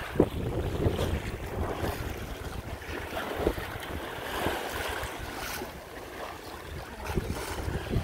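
Wind rushing over the microphone, with water washing along the hull of a sailboat under way.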